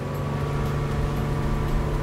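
Boat engine running steadily at speed, with wind and water rushing past the hull.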